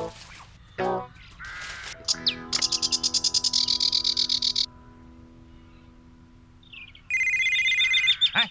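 Cartoon soundtrack of held music notes under a rapid, high, chirping bird trill lasting about two seconds. About seven seconds in, a mobile phone ringtone starts, a loud, steady, pulsing high tone.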